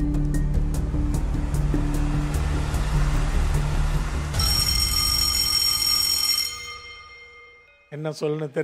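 Game-show countdown music: a steady low bass bed with faint, evenly spaced ticks, joined about four seconds in by a bright, high shimmering chord that fades out near the end.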